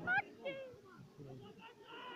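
Spectator voices: a loud, high-pitched shout that rises in pitch right at the start, followed by quieter mixed talk.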